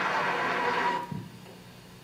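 Worn videotape audio playing back: a dense wash of crowd or room sound cuts off suddenly about a second in, at a tape edit, leaving only a faint steady hum.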